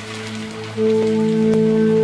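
Food sizzling and crackling in a pan of hot oil, with steady held musical notes coming in louder about a second in.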